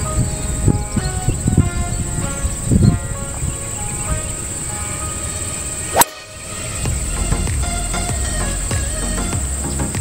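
A Tour Edge Exotics E8 Beta 3-wood striking a golf ball: one sharp crack about six seconds in, over background music and a steady high insect buzz.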